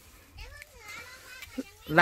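A young child's soft, high voice: a few short sliding sounds of babbling in the first second and a half, quieter than the talk around it.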